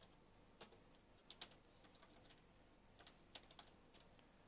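Faint, irregular key clicks of a computer keyboard as a short message is typed.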